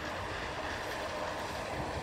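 Walt Disney World monorail train running along its elevated beam, a steady, even running noise.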